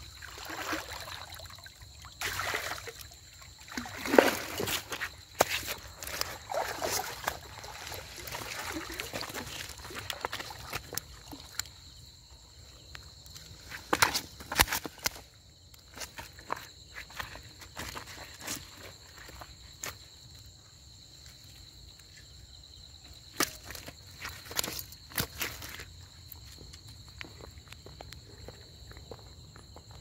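Water sloshing and splashing as a person wades through a shallow river pool, with irregular wet slaps and knocks on a stone slab as a wet cast net is handled on the rock. A faint steady high whine sits underneath.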